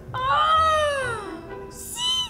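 A cat's long meow that rises slightly and then falls in pitch, followed near the end by a short hiss and the start of a second, brief call.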